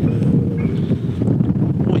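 Strong wind buffeting the microphone: a steady, loud low rumble.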